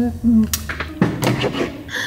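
A closed-mouth hummed 'mm-hmm', then a few sharp knocks and a heavier thud about a second in.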